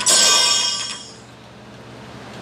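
A bright, bell-like metallic chime that rings out at once and fades away within about a second.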